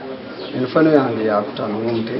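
A man's voice speaking in short phrases, loudest about a second in.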